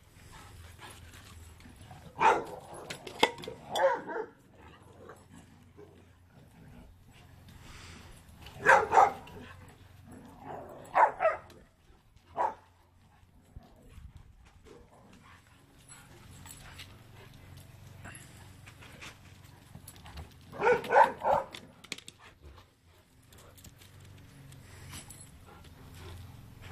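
Leonberger dogs barking during rough play, in several short bursts of barks with quieter pauses between them.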